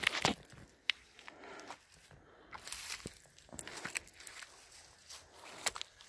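Footsteps through dry brush and grass, with twigs and stems crackling irregularly and a few sharper snaps.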